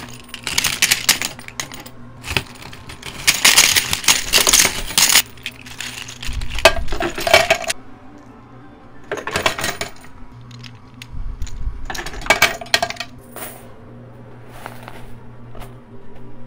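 Coin pusher machine: quarters and casino chips clattering against each other and the metal in repeated spells every couple of seconds, over a steady low machine hum.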